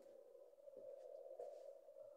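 Near silence with a faint steady mid-pitched hum.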